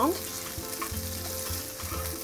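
Corn, red peppers and green onions sautéing in a skillet, sizzling steadily as a wooden spatula stirs them around the pan.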